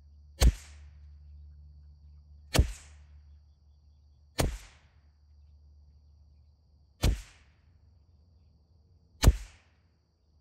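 .22 LR rimfire rifle firing SK Pistol Match ammunition, five single shots spaced about two seconds apart, each a sharp crack with a short tail.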